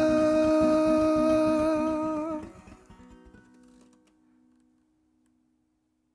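Acoustic guitar strummed under one long held vocal note with no words, which wavers slightly and stops about two and a half seconds in. The last guitar chord then rings on alone and fades away, the song's final ending.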